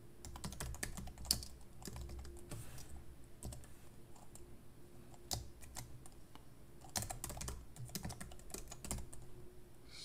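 Typing on a computer keyboard: irregular single key clicks, with a quick run of keystrokes about seven seconds in.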